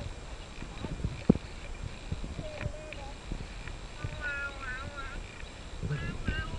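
Irregular low knocks and clunks from a baby swing on chains as it swings back and forth, with a few short, wavering high-pitched vocal sounds in the second half.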